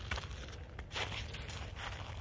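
Faint footsteps crunching on thin snow over frozen ground, a few soft crunches in a row.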